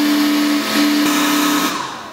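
Atezr L2 24 W laser engraver's air-assist pump and fans running with a steady hum and hiss, then winding down and stopping near the end.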